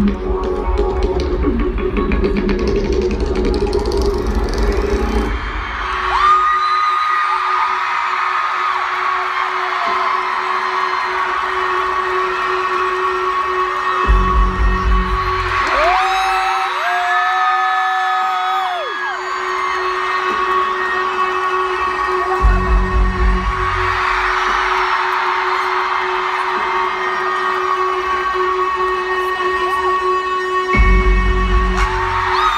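Live arena concert intro music played over the PA: a steady held synth tone with deep bass that drops out after about five seconds and returns in short blasts twice more and at the end. A large crowd cheers and screams in swells over it, loudest about halfway through.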